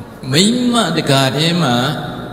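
A man's voice through a microphone, speaking in a drawn-out, sing-song intonation that starts about a third of a second in.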